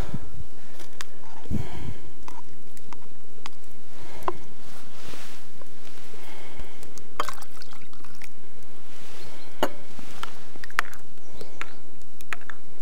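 Thick sour cream poured from a plastic cup into a ceramic bowl, with scattered short clicks of a metal spoon against the bowl.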